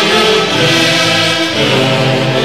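Orquesta típica del centro playing a tunantada live: a massed saxophone section in held, blended chords, with harp and violins.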